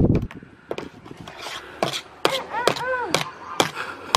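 A pink plastic toy spade repeatedly whacking a garden table top, about half a dozen sharp, irregular knocks.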